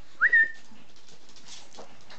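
A person's short whistle, sliding up and then held briefly, calling a puppy.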